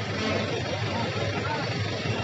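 Busy outdoor ambience: indistinct voices of people around mixed with steady traffic noise.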